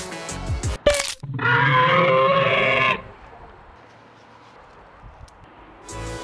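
Background music cuts off with a sharp click about a second in, followed by a loud, wavering bleat-like call lasting about a second and a half, then only a faint hiss.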